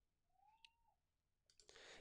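Near silence: room tone, with a faint brief gliding tone about half a second in and a few faint clicks near the end.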